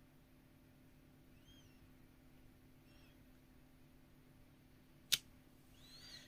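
Quiet room tone with a single sharp click about five seconds in, from the acrylic stamping block as it comes off the card; a couple of faint, short high chirps earlier on.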